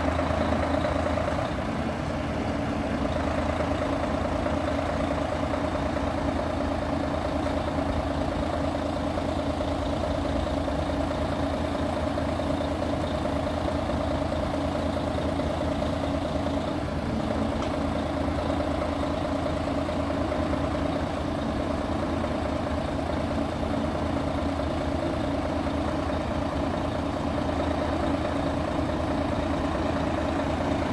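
2005 Mercedes-Benz Actros truck's diesel engine idling steadily with a constant hum, while it drives the hydraulics of its loader crane.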